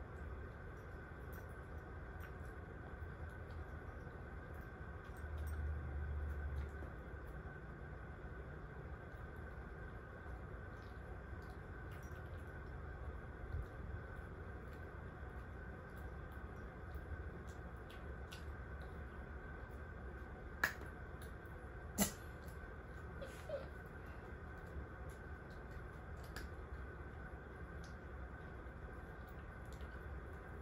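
Quiet room tone with a low steady hum, broken by a few faint ticks and two sharp clicks about two-thirds of the way through.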